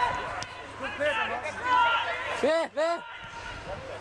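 Male football spectators shouting and calling out, loudest about two and a half seconds in, over a steady low rumble.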